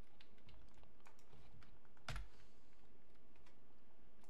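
Computer keyboard being typed on: scattered light key clicks, with one louder knock about two seconds in.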